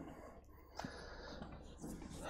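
A quiet pause with faint room noise, a soft breath at the lapel microphone, and one small click just before the middle.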